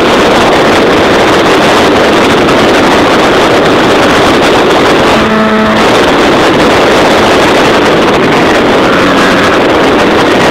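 Loud, steady engine and propeller noise of a Bellanca light aircraft in flight, heard from inside the cabin. A brief pitched tone sounds about five seconds in.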